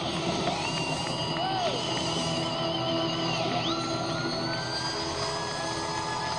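A live rock band playing loud, with long high held notes that waver and slide upward over the full band. The sound comes from an audience recording in a concert hall.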